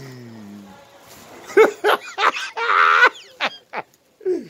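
A man's wordless vocal sounds: a low falling groan at the start, then a string of short loud cries, the longest and loudest about three seconds in.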